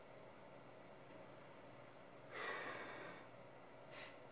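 A man's heavy breath out, one puff a little past halfway that fades over about a second, drawn by hard exertion on the leg press; otherwise quiet room tone.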